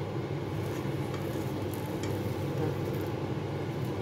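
Egg omelette softly sizzling in a frying pan over a steady low hum, with a few light touches of a spatula on the omelette as it starts cutting it.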